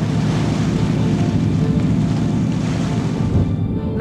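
Rushing water from a boat's bow cutting through the sea, a steady loud wash that fades out near the end, over a dark music bed.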